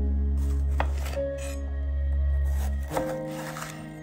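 Chef's knife slicing through a raw red bell pepper on a wooden cutting board: two crisp, crunchy cuts, one just after the start with a click as the blade meets the board, and another about three seconds in. Soft background music with sustained tones and a steady bass plays throughout and is the louder sound.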